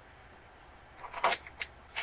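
A few short, light clicks and scrapes of a socket tool being fitted onto a frame-rail bolt. They are irregular and start about a second in, after a quiet first second.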